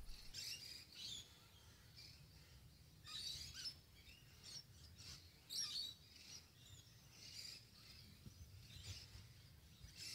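Faint bird calls: scattered short chirps and whistles, with a louder burst of calls about three seconds in and another about five and a half seconds in.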